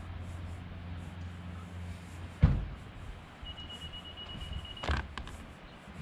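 Car engine running low and steady as it reverses a boat trailer down a launch ramp, cut off by a sharp thump about halfway through. Later a high steady beep lasts about a second, followed by another knock.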